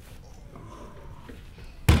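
A chiropractic side-posture spinal adjustment: quiet while the patient breathes out, then a single sudden loud thump near the end as the thrust is delivered into the body on the adjusting table.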